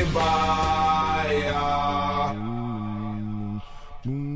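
Music with a busy vocal line fades out over the first two seconds, then a man's low voice holds a long droning chant-like note that bends up briefly at its start and breaks off shortly before the end.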